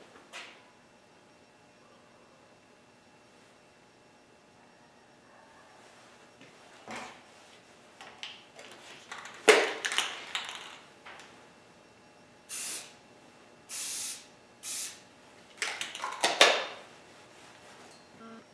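Aerosol can of clear coat: the cap comes off with a clatter about halfway through, then the can is sprayed in three short bursts, with a little more handling noise after.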